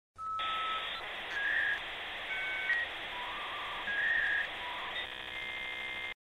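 Electronic intro jingle: a string of short beeping tones at shifting pitches over a steady hiss, turning into a buzzy chord for the last second before it cuts off suddenly.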